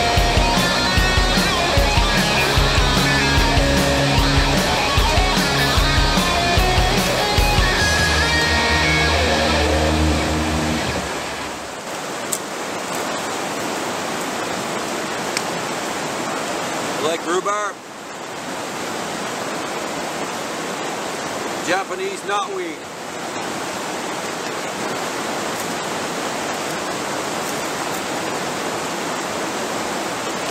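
Guitar-driven background music for about the first twelve seconds, then it cuts off to the steady rush of a fast-flowing rocky river. A short vocal sound comes twice over the water.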